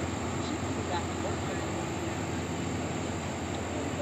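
Steady low drone of a towboat's diesel engines as it pushes a string of barges along the river, with faint voices murmuring underneath.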